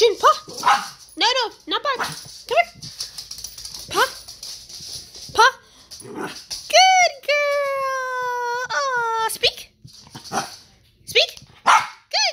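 Small puppy barking in a string of short high yaps, then giving one long, drawn-out whining howl of about two and a half seconds, slightly falling in pitch and broken once near its end.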